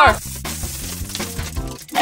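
Background music with a light scattered clatter of small hard candies dropping onto a person.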